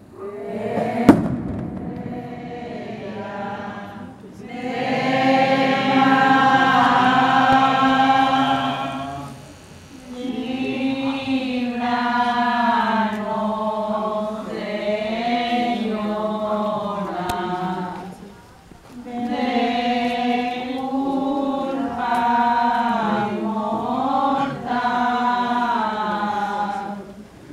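A group of people singing a religious hymn together in three long phrases, with short breaths between them. About a second in there is a single sharp bang, louder than the singing.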